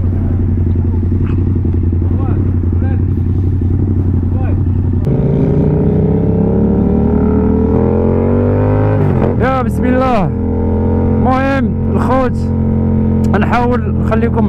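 Yamaha MT motorcycle engine idling, then pulling away about five seconds in, its pitch rising steadily. From about nine seconds there are several short rises and falls in pitch.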